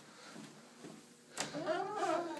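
A door latch clicks about a second and a half in. It is followed at once by a door hinge squeaking in one long tone that rises and falls in pitch as the hallway door swings open.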